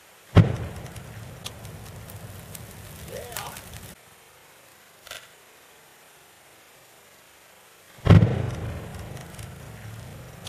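A pile of dry berry vines doused with fuel going up in a sudden whoosh about eight seconds in, followed by the low, steady rumble of the flames. A similar whoosh and rumble comes just after the start and cuts off abruptly after about four seconds.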